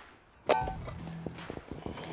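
A sharp metallic clank with a short ring about half a second in, as the metal rescue-strut raker is picked up. Small knocks and footsteps follow while it is carried, over a steady low hum.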